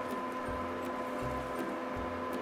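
Wire whisk stirring thick batter in a glass bowl, with faint, irregular clicks of the wires against the glass.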